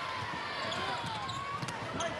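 A basketball dribbled on a hardwood court, with short repeated bounces over steady arena crowd noise.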